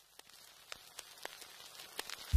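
Near silence with faint, scattered ticks, the quiet lead-in to electronic background music.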